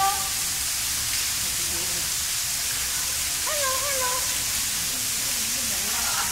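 A steady hiss, like rushing water or air, with short high-pitched voices right at the start and about three and a half seconds in, and lower voices murmuring near the end.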